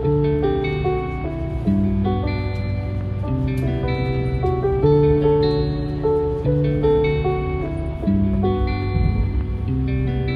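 Instrumental background music with guitar, notes changing about twice a second.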